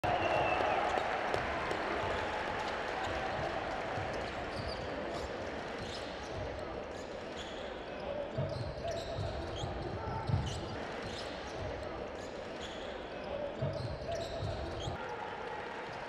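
Basketball arena ambience: steady crowd chatter and indistinct voices echoing in the hall, with the low thuds of basketballs bouncing on the court, bunched in the second half.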